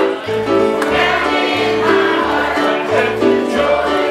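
A group of children singing a song together, with instrumental accompaniment carrying a bass line of held low notes beneath the voices.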